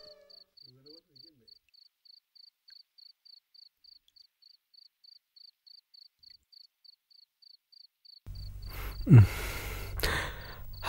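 Crickets chirping steadily at about three chirps a second, faint. Near the end a louder background noise cuts in, with one loud sound falling in pitch just after it.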